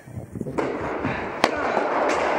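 A tennis racket striking the ball during a rally on an indoor clay court: one sharp crack about one and a half seconds in, over a low background murmur of voices.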